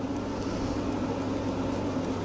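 A steady low hum over an even hiss, with no clear rises or strokes: the constant background noise of the room, like a running appliance.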